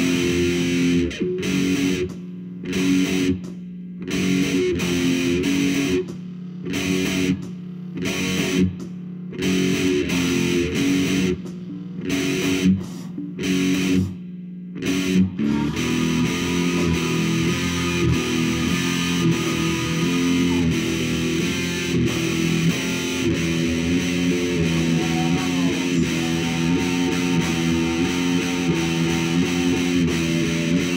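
Electric guitar with distortion playing a heavy riff: chords cut off with short silences between them, then from about halfway on, continuous sustained chords.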